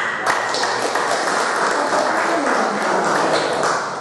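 Audience applauding: a steady spell of clapping that starts abruptly and ends about four seconds in.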